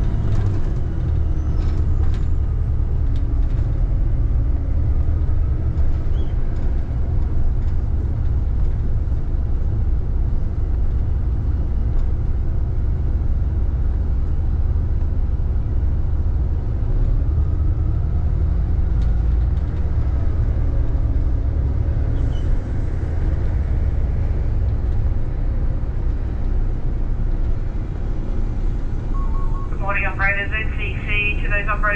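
City bus's engine and drivetrain rumbling steadily as it rolls slowly, heard from the driver's cab. Near the end a quick run of electronic chirping tones from the two-way radio starts, ahead of a dispatch call.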